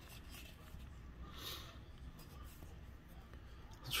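Faint sliding of glossy trading cards against one another as a stack is flipped through by hand, with one soft swish about a second and a half in.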